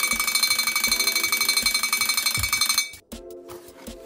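Rapid metallic ringing, like a small bell struck many times a second, standing in for the drum roll that was called for. It runs for about three seconds and cuts off suddenly.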